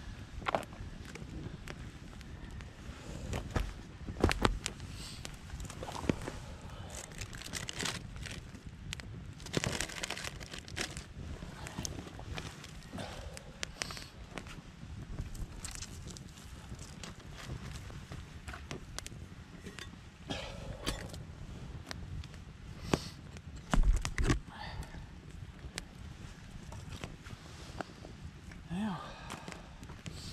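Wood campfire crackling, with scattered sharp pops and snaps from the burning sticks. A louder knock comes a few seconds in and the loudest thump about three-quarters of the way through.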